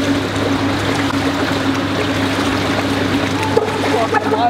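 Swimming pool water sloshing and splashing against the wall in a reverberant indoor pool hall, over a steady low hum.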